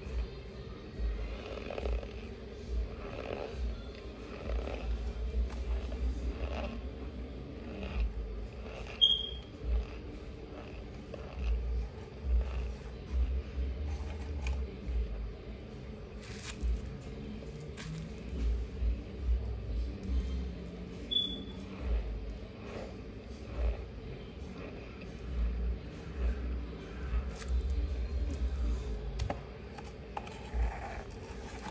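A mouthful of raw Maizena cornstarch being chewed and pressed between the teeth, with irregular soft crunches and clicks. There are two brief high squeaks, about a third of the way in and again about two-thirds in. This thick starch squeaks only a little, and only when worked hard.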